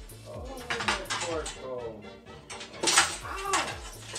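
Plastic food trays and dishes clattering a few times as they are handled, the loudest knock about three seconds in, over background music with a steady beat.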